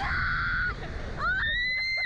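Young women screaming on a SlingShot ride. One high scream is held for under a second, and then a second scream rises in pitch and holds to the end, over a steady low rumble.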